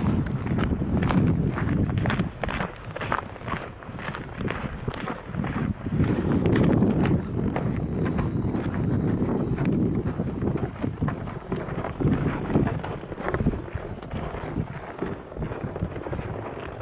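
Footsteps on a snow-covered path, a steady walk of about two steps a second, each step a soft crunch, over a low rumble.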